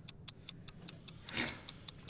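Clock-like ticking: short, even, high-pitched ticks at about four a second. A faint brief rustle comes about a second and a half in.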